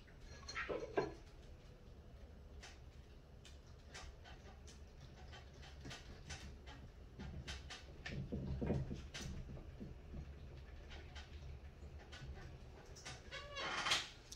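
Faint handling noise of electrical wires and plastic wire nuts being twisted together, with scattered small clicks throughout and a brief pitched sound about a second in.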